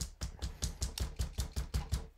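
Quick, evenly spaced clicks, about seven a second: light, rapid tapping on a hard surface.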